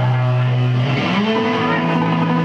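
Live hardcore/thrash band's electric guitar holding a loud chord, then sliding up to a higher held chord about a second in.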